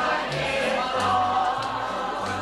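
Folk song sung by a group of voices over a string band, with a bass playing steady low notes beneath.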